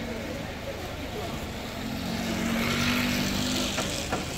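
A motor vehicle engine running steadily close by over street noise. It grows louder about two seconds in and drops off just before a short knock near the end.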